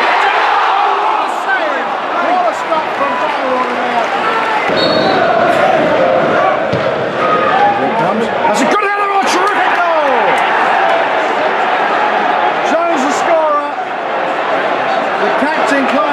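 Football stadium crowd: many supporters shouting and chanting together without a break, with a few sharp knocks about nine seconds in.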